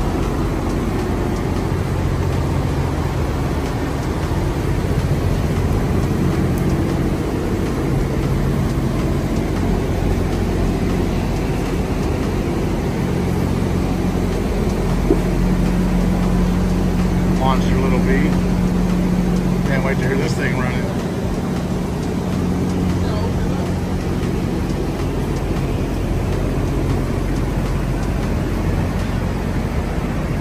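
An engine running steadily with a low drone, its pitch stepping up slightly for a stretch in the middle, with faint voices in the background.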